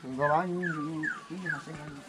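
An animal giving about four short, high calls that each fall in pitch, spaced roughly half a second apart, with a low voice in the background.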